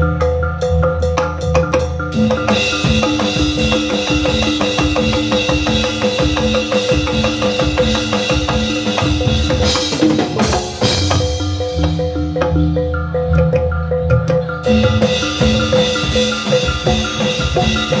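Loud Javanese jathilan accompaniment: gamelan-style music with metallophones ringing a repeating melody over a fast, steady drum rhythm. A brief noisy crash cuts across it about ten seconds in.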